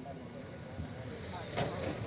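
A pack of radio-controlled race cars sweeping past close by, loudest about a second and a half in, with voices underneath.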